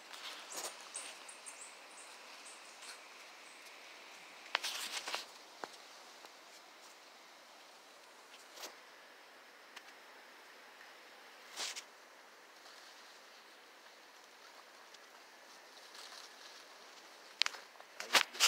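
Faint outdoor background with scattered brief rustles and scrapes, the loudest about four and a half seconds in and again near twelve seconds: branches and leaves disturbed as someone climbs a calabash tree.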